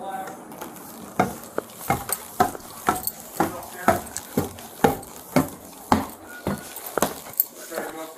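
Footsteps of a person walking at a steady pace, about two steps a second, each one a short sharp knock.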